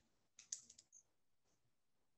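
Faint computer keyboard clicks: a quick run of a few keystrokes about half a second in, otherwise near silence.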